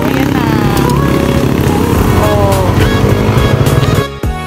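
Dirt bike engine running at low speed as the bike rolls slowly forward, heard under loud music with a gliding melodic voice.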